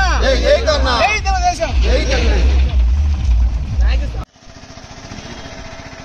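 Several men's voices calling out loudly over a heavy low rumble. About four seconds in, the sound cuts off abruptly to a much quieter steady hum.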